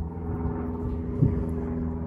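Steady low hum of a running engine in the background, even in pitch throughout.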